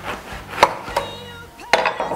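Kitchen knife cutting through a passion fruit on a wooden cutting board: a few sharp knocks as the blade goes through the fruit's hard rind and strikes the board.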